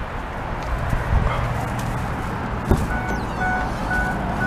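A car door unlatching with a click about two-thirds of the way in, then the car's door-open warning chime beeping rapidly, about three beeps a second, over steady background noise.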